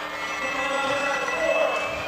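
Inline speed skate wheels whirring on a wooden track floor as the pack skates past: a steady hum with several thin high tones that rise slightly, under a hall's background noise.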